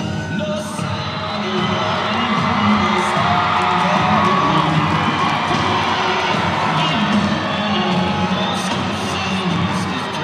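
A gymnasium crowd cheering and shouting over loud music, the cheering swelling over the first couple of seconds and holding.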